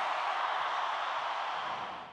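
Steady hiss with no music or voice, fading slightly toward the end: tape hiss from a 4-track tape recording.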